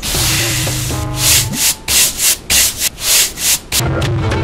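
Broom sweeping the ground in a quick run of short strokes, about seven in two and a half seconds, starting about a second in.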